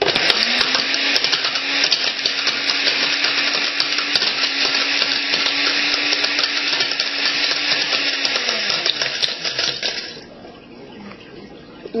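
Countertop blender motor spinning up and running at full speed, with the hard plastic and circuit board of a Game Boy Advance cartridge clattering and grinding against the jar. The motor winds down about nine seconds in, and the rattle stops about a second later.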